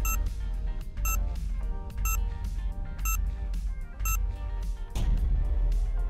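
Quiz countdown-timer music with a heavy bass and a short beep once a second, five times, marking the seconds as a five-second answer timer runs down.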